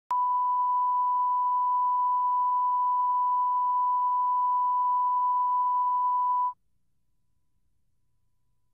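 Steady 1 kHz line-up test tone from the head of a videotape transfer, cutting off suddenly about six and a half seconds in.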